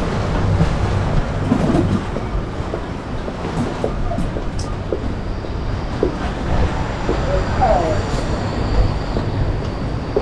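City street ambience: a steady low traffic rumble with faint voices and scattered small clicks and knocks, and a short falling squeal about eight seconds in.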